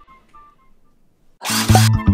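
Title-card music sting: a few faint musical notes fade out, then about a second and a half in a sudden loud noisy whoosh with deep tones starts the segment's jingle.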